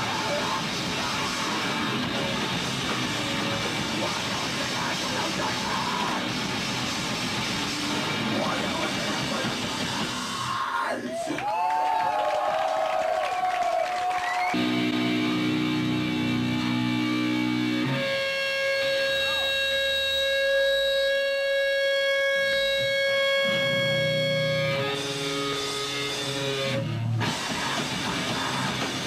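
Live grindcore band playing with distorted guitar, bass and drums at full speed. About ten seconds in it breaks into long held guitar notes: first a sliding, bending note, then a sustained chord, then one long steady ringing tone. The full band crashes back in near the end.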